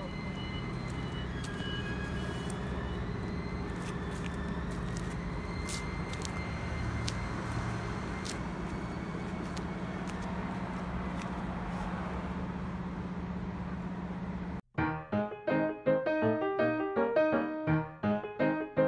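Small engine of a Maruyama MS053D-20 backpack power sprayer running steadily with an even hum. It cuts off abruptly about three seconds before the end, and piano music follows.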